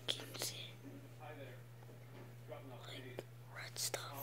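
A person whispering quietly in short phrases, with hissy breathy bursts, over a steady low hum.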